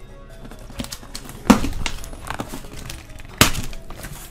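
Kitchen knife slicing through packing tape on a cardboard box, then the cardboard flaps being pulled open, with two loud sharp sounds about a second and a half in and near the end.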